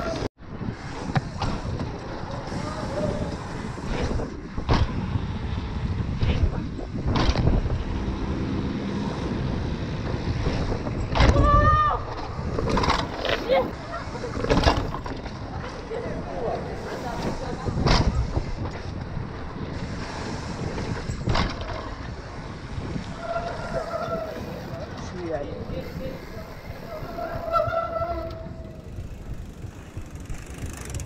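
Mountain bike ridden on paved and cobbled city streets. There is a steady rush of wind on the helmet or bike camera's microphone, and the bike rattles and knocks sharply over bumps. Short shouts from riders come in a few times, notably near the middle and toward the end.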